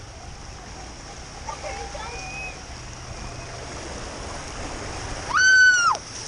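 Water and rider rushing down a water slide, a steady hiss of running water and spray. Near the end a loud high-pitched yell is held for about half a second.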